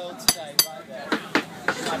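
Meat cleaver chopping a block of cheese on a wooden cutting board: several sharp knocks of the blade striking the board, irregularly spaced.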